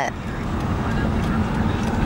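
A car's engine running steadily, heard from inside the cabin as a low, even rumble.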